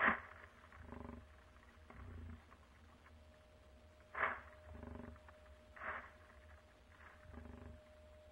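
Animal calls at close range: three short, sharp, breathy calls, at the start, about four seconds in and about six seconds in, with softer, low, rattling grunts between them.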